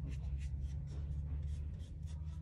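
A paintbrush stroking and dabbing paint onto canvas paper in a series of short scratchy strokes, laying orange highlights around the edge of a rose. A steady low hum runs underneath.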